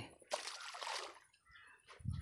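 A snakehead fish, thrown back after being caught, splashes into pond water about a third of a second in. The splash is brief and dies away within about a second.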